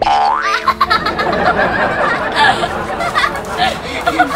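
A rising cartoon slide-whistle sound effect right at the start, followed by a girl laughing over background music.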